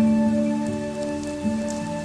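Rain falling and drops splashing on a wet surface, under slow instrumental music with long held notes.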